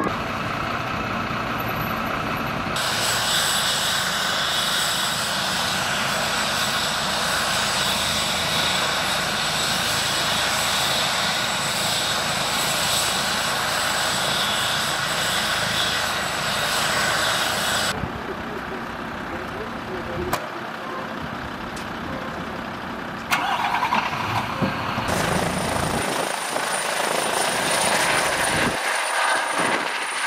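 Vehicle engines running at the scene, heard as several stretches of location sound that change abruptly at each cut.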